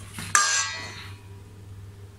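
Stainless steel mixing bowl knocked once about a third of a second in, ringing briefly and fading, while flour and water are being mixed in it.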